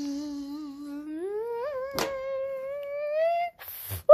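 A child humming one long held note that rises in pitch about halfway through, then holds at the higher pitch until it stops shortly before the end. There is a brief click about two seconds in.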